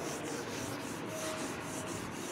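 Whiteboard being wiped with a duster: a rhythmic rubbing, scrubbing sound.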